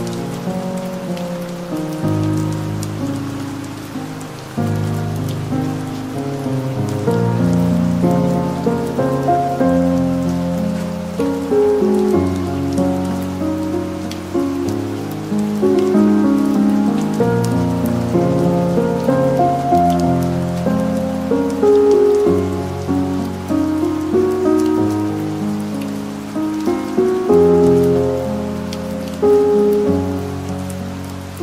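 Calm, slow piano music, one note or chord after another, over a steady soft rain sound.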